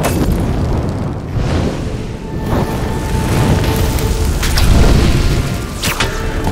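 Film soundtrack of a blast and fire: a sudden loud boom at the start, then a continuous deep rumble. Sharp crashes come about two and a half seconds in, around four and a half seconds, and near the end, with music playing underneath.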